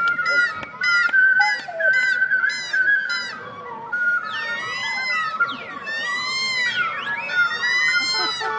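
Several ocarinas played close up and at once: a rapid run of short, high notes for the first few seconds, then long swooping glides up and down in pitch, with lines crossing one another.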